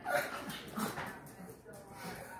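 Small dog making a few short, soft whines and yips, begging to be fed.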